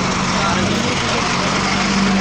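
A motor vehicle's engine idling, a steady low hum that fades a little about halfway through, under the chatter and bustle of a crowded street.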